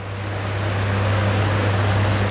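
Steady rushing noise that grows gradually louder, over a low steady hum.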